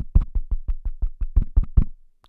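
Handling noise on the Antlion Uni 2 clip-on microphone: a quick, even run of about a dozen low thumps, roughly six a second, as fingers work the small part of the microphone held in the hand.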